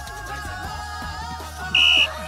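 One short, loud blast of a referee's whistle, a single steady high tone, near the end, over background pop music with singing.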